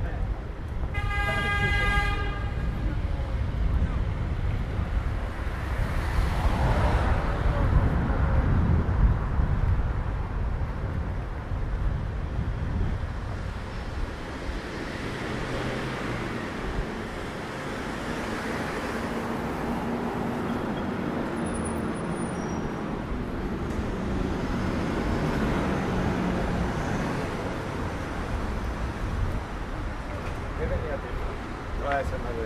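City street traffic with a single car horn honk, about a second long, near the start. A louder rumble of a passing vehicle follows a few seconds later, then a steady traffic hum with passers-by talking.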